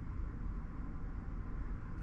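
Steady low hum with a faint hiss, even throughout with no clicks or changes: background machine and room noise.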